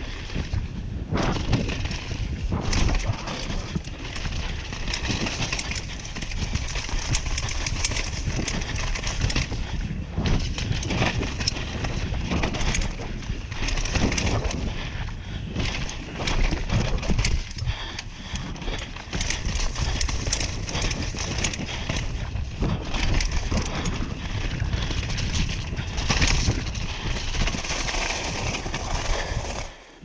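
Downhill mountain bike running fast down a wet, muddy trail: a steady rush of tyre and air noise, with the bike rattling and knocking constantly over the rough ground.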